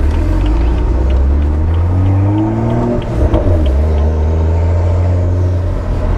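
Stage 2 tuned BMW 135i straight-six with its aftermarket exhaust, heard from inside the cabin while driving: a deep steady drone. About two seconds in the engine note rises, breaks off about three seconds in, then settles back to a steady drone.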